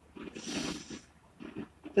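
A man's breath drawn close to the microphone: a short breathy hiss lasting under a second, in a pause between spoken phrases.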